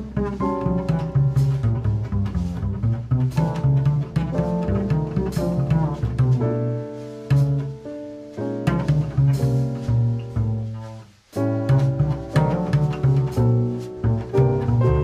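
Jazz quartet recording in which the plucked upright double bass leads, walking through low notes over piano chords and drums. The music briefly thins almost to nothing about eleven seconds in, then picks up again.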